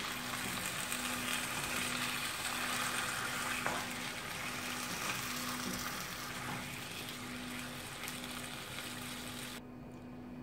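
Potato slices sizzling in hot oil in a nonstick frying pan as a spatula stirs them and the spices in, with a faint steady hum underneath. The sizzle cuts off abruptly near the end.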